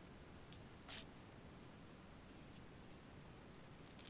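Near silence: room tone, with one faint short hiss about a second in.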